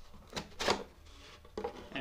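A four-grit diamond sharpening stone being lifted out of its holder: two short clicks, the second louder, about half a second in.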